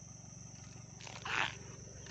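Low, steady rumble of the caravan's tow vehicle engine idling, with a thin steady high-pitched insect drone over it.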